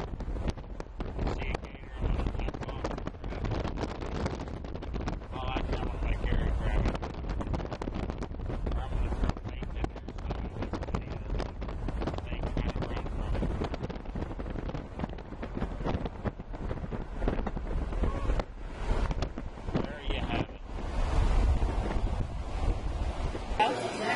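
Wind buffeting the microphone from a moving car, with a heavy, uneven low rumble and faint voices now and then.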